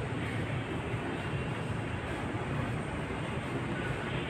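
Steady urban background noise with a low rumble and no distinct events.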